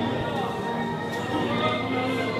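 Church orchestra with brass, a euphonium close by, playing a hymn in held, sustained notes, with the congregation singing along.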